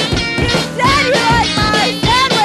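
Punk rock song playing: drums, electric guitar and a woman singing.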